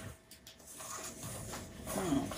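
Faint stirring of stiff, sticky bread dough with a spoon in a stainless steel mixing bowl: soft, uneven scraping and knocking as the flour is worked in.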